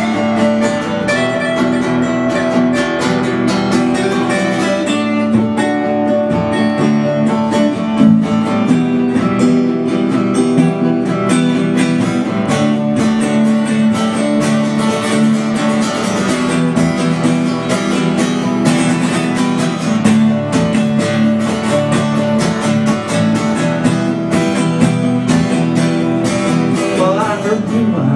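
Instrumental break on acoustic guitars: a guitar strummed steadily, with quick picked notes running over it.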